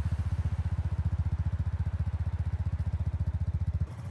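Motorcycle engine sound effect idling with a steady, rapid low throb, cutting off suddenly near the end.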